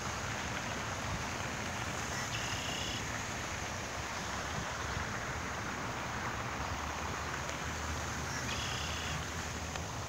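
Steady outdoor background noise with a low rumble, and a bird calling briefly twice, about two and a half seconds in and again near nine seconds.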